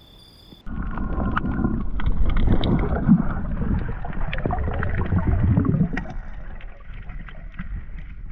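Muffled water and wind rumble with scattered small knocks. It cuts in abruptly about half a second in and eases off after about six seconds.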